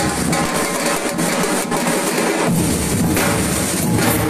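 A street drum group playing harness-slung marching drums together in a dense, driving rhythm. The deep drums drop out for about two seconds, then come back in.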